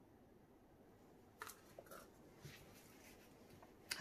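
Near silence, with a few faint light taps and scrapes from a wooden craft stick stirring thick resin on a plastic lid and being handled.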